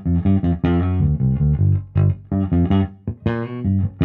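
Fender Boxer Series Precision Bass played clean, a bass line of short plucked notes, about three or four a second. The bridge pickup's volume is being rolled off, so the tone moves toward the front pickup alone.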